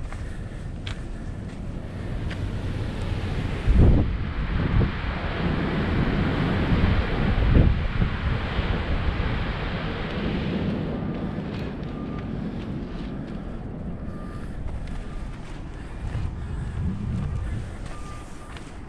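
Wind blowing across the camera microphone: a steady rushing that swells about four seconds in, with a few low buffeting thumps, and eases off after about eleven seconds.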